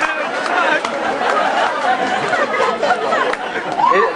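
Audience chatter: many voices talking over one another.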